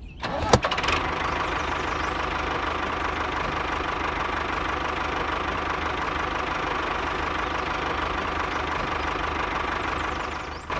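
A small knock as a pot is set into a toy trailer, then a tractor engine starts and runs steadily.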